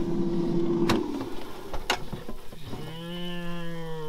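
Countertop air fryer's fan humming steadily, then cutting out with a click about a second in as the basket drawer is pulled open; another click follows. Near the end a person gives a long, drawn-out "mmm" of appreciation.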